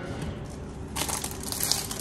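Crinkling of a clear plastic wrapper as a spray bottle still in its plastic sleeve is picked up and handled, starting about a second in and growing louder.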